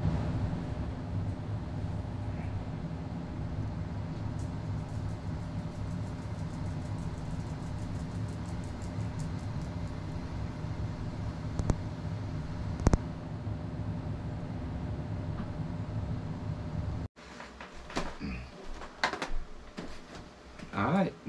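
Motorized display turntable running with a steady low hum and faint rapid ticking, with two sharp clicks a little past the middle. The hum cuts off suddenly near the end, leaving quieter rustles and knocks.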